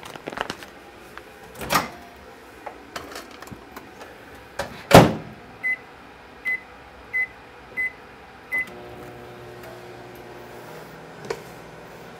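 A microwave oven being set: handling clicks, then a loud thump as the door shuts, five short keypad beeps about two-thirds of a second apart, and the oven starting up with a steady hum that runs on. It is heating a pouch of whole grain rice for 90 seconds.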